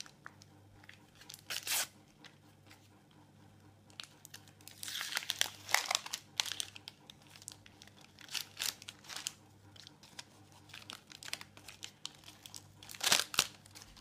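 A Panini sticker packet being torn open and crinkled by hand, then the stickers shuffled. The rustling comes in irregular bursts, densest around the middle, with one sharp loud crinkle near the end.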